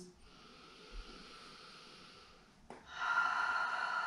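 A woman breathing audibly: a faint, long inhale, then, about three seconds in, a louder, breathy sigh out through the mouth, a big sigh breath.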